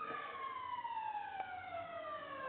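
A siren wailing, its pitch falling slowly and steadily through the whole stretch.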